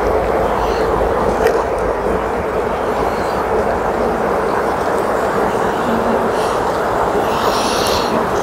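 Honeybees buzzing in a steady hum around a brood frame lifted out of an open hive, under a steady low rumble.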